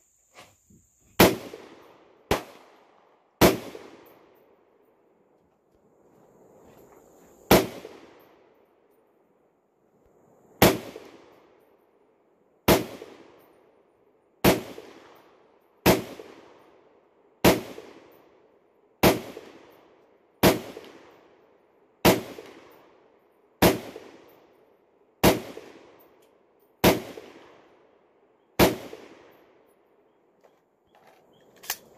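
AR-10 semi-automatic rifle fired in single shots, sixteen in all. Three come in the first few seconds, then after a pause the shots come at a steady pace of about one every second and a half. Each shot is a sharp crack followed by a tail that dies away over about a second.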